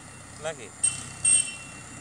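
High-pitched steady tone sounding twice in short beeps, the second longer, loud over faint outdoor background.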